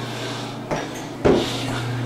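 Two short knocks about half a second apart, the second louder, over a steady low hum.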